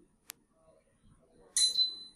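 Instant Pot electronic pressure cooker giving one short, high-pitched beep about one and a half seconds in, signalling that it has reached its set temperature and switched off. A faint click comes shortly before it.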